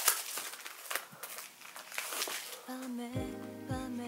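A CD album's paper and card packaging rustling and sliding in hands as it is opened. About three seconds in, background music with a steady low bass comes in.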